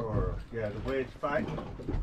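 Indistinct voice sounds from the people on board, with no clear words, over a low rumble.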